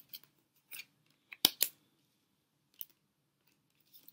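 A deck of divination cards being handled: a few short, crisp clicks and snaps of card stock, the loudest two close together about a second and a half in.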